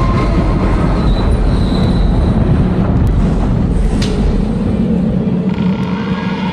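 Eerie opening of a horror dance backing track played over the hall's sound system: a loud, steady low rumble with faint thin whistling tones above it.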